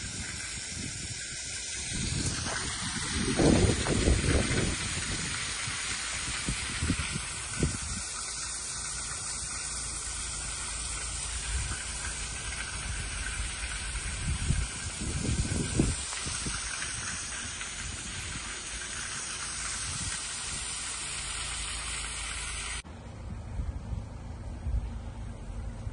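Floodwater gushing up through the road surface and running across the icy pavement, a steady hiss that cuts off suddenly near the end, with a few low bumps along the way.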